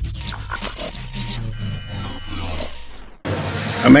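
Intro music sting with a deep bass rumble and glitchy clicks, fading and then cut off abruptly about three seconds in, leaving quiet room tone before a man starts speaking at the very end.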